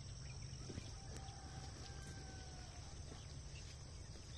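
Distant domestic fowl giving one drawn-out call of about two seconds, over a steady high-pitched drone of insects and a low rumble.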